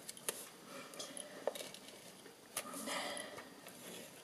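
Stampin' Up Seal adhesive tape runner being rolled across a small piece of patterned paper: faint clicks, then a short rasping run about three seconds in.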